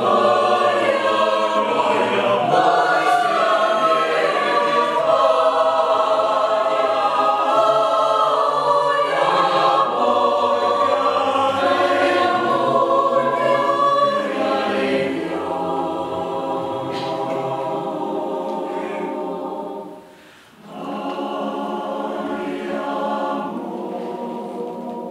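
Mixed choir singing a cappella in sustained chords: full and loud at first, turning softer about fourteen seconds in, with a brief break near twenty seconds before a quieter phrase.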